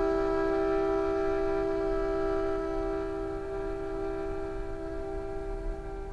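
Violin holding one long bowed note with a second note sounding with it, steady in pitch and slowly getting quieter.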